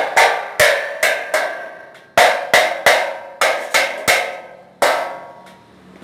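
Light-steel roof-frame channel being struck: about a dozen sharp metallic blows in irregular groups, each ringing briefly as it dies away.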